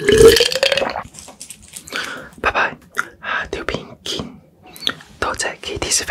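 A loud burp right after gulping water, lasting about a second with a slightly rising pitch, followed by a string of short, softer mouth sounds.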